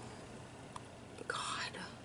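Quiet room tone, then a brief breathy whisper from a woman about a second and a half in.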